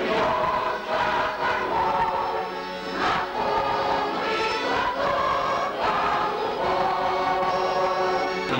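Mixed choir of elderly men and women, a veterans' choir, singing together in long held notes, phrase after phrase.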